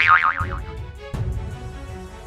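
A comic boing sound effect right at the start, its pitch wobbling quickly for about half a second, over background music with a steady beat.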